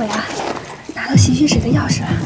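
A woman speaking Mandarin in a light, lilting voice.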